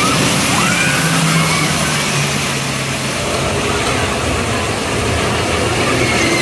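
Kiddie dragon roller coaster running on its track: a steady, loud rushing noise over a low hum, with short high squeals that rise and fall now and then.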